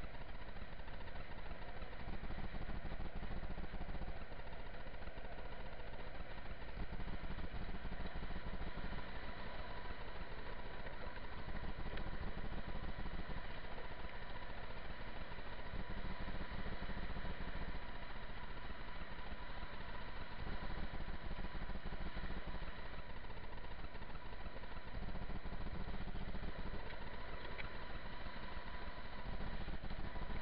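Wind rushing over a moving action-camera microphone, with the rolling roar of skateboard wheels on asphalt during a downhill longboard run. A low rumble swells and eases every few seconds, under a faint steady whine.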